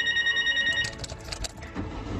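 Bell of an old black rotary desk telephone ringing in a fast trill, which stops abruptly a little under a second in; a few light clicks follow.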